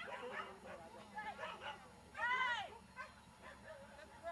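A dog yipping, with its loudest call about two seconds in: a high yelp that rises and falls in pitch over about half a second.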